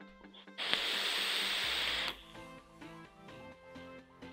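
A drag on an e-cigarette: a loud, even hiss of air drawn through the atomizer, starting about half a second in and cutting off after about a second and a half. Quiet background music with a plucked beat runs underneath.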